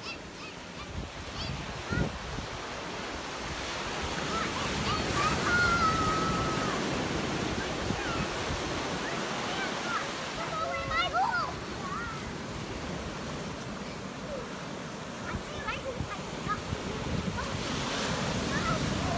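Ocean surf breaking and washing up a sandy beach, a steady rushing that swells about five seconds in.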